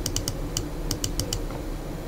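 A quick, uneven run of about eight sharp clicks from computer controls in the first second and a half, as the on-screen page is zoomed in, over a steady low hum.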